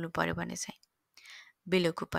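Speech only: a voice narrating, with a short pause near the middle broken by a faint brief hiss.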